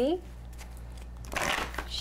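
Tarot cards being shuffled by hand: a brief burst of shuffling about one and a half seconds in.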